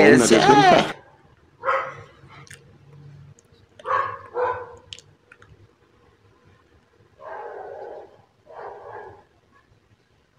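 A dog barking: two pairs of short barks, then two longer, fainter sounds near the end.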